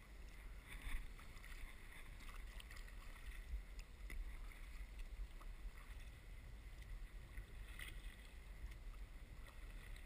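Faint water sounds from a skin-on-frame kayak being paddled: paddle splashes and water against the hull, muffled through a waterproof camera case, over a low rumble. The loudest splashes come about a second in and again near the end.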